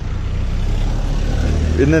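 Low, steady rumble of a motor vehicle's engine running close by. A man starts talking near the end.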